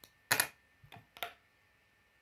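Plastic Lego bricks clicking and knocking as they are handled and pressed onto a small model: one louder clack about a third of a second in, then two lighter clicks around one second in.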